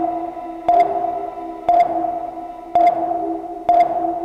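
Synthesized sonar-style ping sound effect repeating about once a second, four pings, each starting with a sharp click and ringing out over a steady electronic hum.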